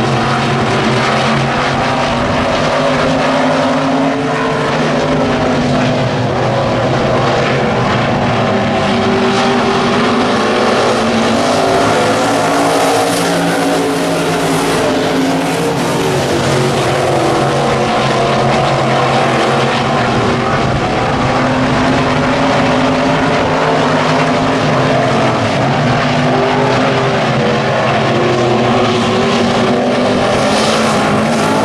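Several IMCA stock cars racing on a dirt oval, their V8 engines running together in a loud, steady drone. One car grows louder and brighter as it passes close, around the middle.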